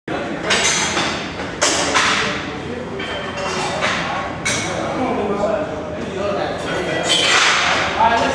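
Indistinct voices and room noise in a weight room, broken by about six short, sudden noisy bursts.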